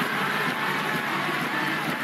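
Large arena crowd cheering steadily after a point is won, a dense wash of many voices.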